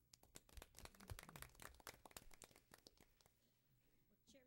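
A small audience clapping briefly, with the applause thinning out after about three seconds.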